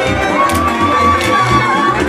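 Romanian folk dance music on accordion, with a long, high, steady whoop held for over a second starting about half a second in. There are a few sharp taps from the dancers' steps.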